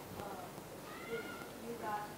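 A girl's voice, quiet and distant, speaking in short phrases as she tells a story to a class.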